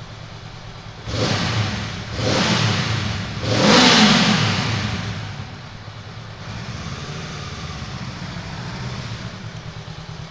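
Honda CL500's 471cc parallel-twin engine revved three times, the third blip the loudest with the revs falling away after it, then settling to a steady idle, echoing in a concrete tunnel.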